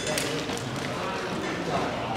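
Faint voices and room noise in a large hall, with a couple of light knocks.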